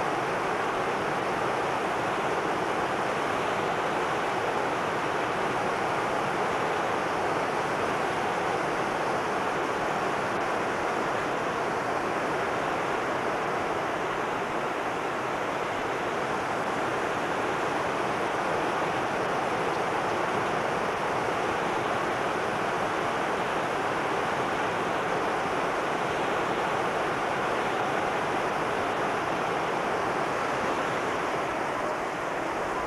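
A waterfall's water pouring steadily over rocks, a continuous rush with no change in level.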